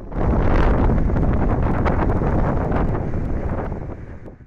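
Tornado-force wind blasting across a phone's microphone: a loud, steady rushing noise that starts suddenly and eases off near the end.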